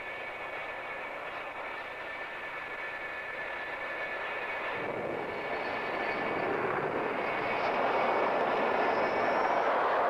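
Jet aircraft engines running: a steady high whine over a rushing noise that grows louder and fuller from about halfway through, with a faint higher whine slowly rising near the end.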